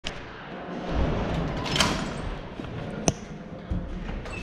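Knocks, thuds and low rumbling noise from a moving body-worn camera, with one sharp click about three seconds in.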